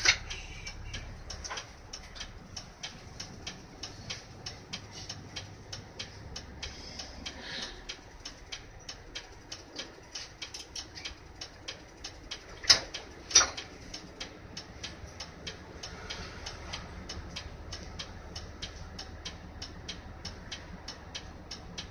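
Isuzu PDG-LV234N2 city bus heard from inside, with a steady rapid ticking of about three clicks a second, typical of the turn-signal relay, over a faint low engine hum. Two louder sharp clicks come about two-thirds of the way through.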